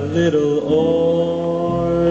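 Live jazz ballad music: a slow melody line that settles into a long held note about halfway through, over a soft keyboard accompaniment.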